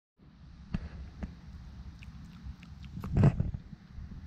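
Handling noise on a camera's microphone as hands set it up: sharp knocks a little under a second in and at about a second and a quarter, and a louder thump just after three seconds, over a low rumble.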